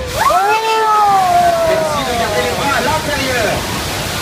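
Several riders screaming and shrieking as a flash flood of water gushes and splashes over the rocks right beside the open tram, with the rush of water underneath. The screams break out about a quarter second in, rising and then gliding down in pitch, and trail off near the end.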